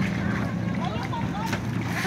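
A boat engine running steadily with a low, even hum, while faint voices call in the distance.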